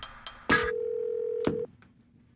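Telephone dial tone held for about a second, cut off by a click, after a few sharp knocks.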